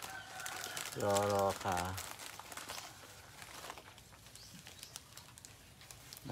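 A man's voice briefly drawing out a word about a second in, then a low background with faint scattered clicks and crackles.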